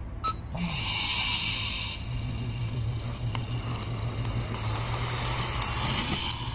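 Small die-cast toy car pushed back and forth by hand on a wooden surface: a steady low rolling rumble from its wheels, with scattered light clicks.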